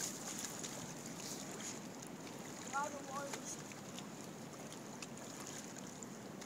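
Steady rush of running water, with light splashing near the start.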